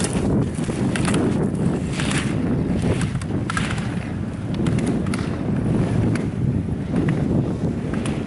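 Wind on the microphone, over the swish of slalom skis carving turns on hard snow about once or twice a second, with scattered sharp clacks of slalom gates being struck.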